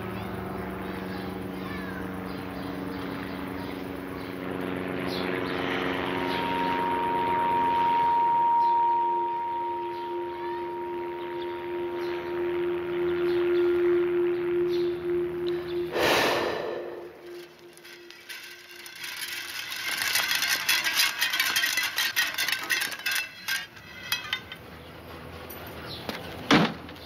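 Film soundtrack: sustained, held musical tones for most of the first two-thirds, cut off by a sudden whoosh about sixteen seconds in, then a few seconds of rapid clicking and ticking.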